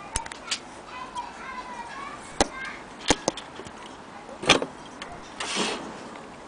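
Handling noise: a series of sharp clicks and knocks at irregular intervals, the loudest about four and a half seconds in, with a short rustle near the end. Faint voices can be heard in the background.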